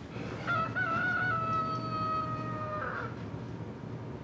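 A rooster's crow: one long cock-a-doodle-doo that starts about half a second in with a short wavering opening, then holds a steady, slightly falling note until it stops a little before three seconds.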